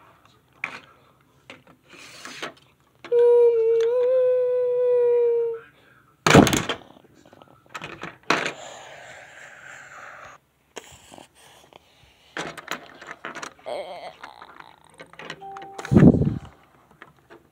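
A voice holds one steady note for about two and a half seconds, then come a sharp thud, a second thud and a stretch of hissing noise. Small clicks of plastic Lego bricks are handled on a table throughout.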